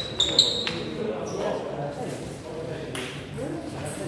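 A table tennis ball bouncing four quick times in the first second, each bounce a short high ping, followed by people talking in the hall.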